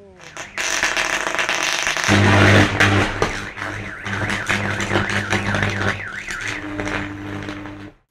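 A loud rushing hiss, then from about two seconds in a steady electrical buzz with crackling, loudest as it begins: electrical equipment arcing and burning, as in a capacitor or transformer failure.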